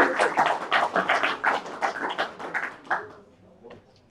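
Audience applauding, a dense patter of hand claps that thins out and stops about three seconds in.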